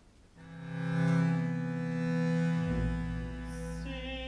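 Orchestral strings, cellos and basses prominent, come in about half a second in with a sustained chord that swells and holds; a deep bass note joins a little after halfway.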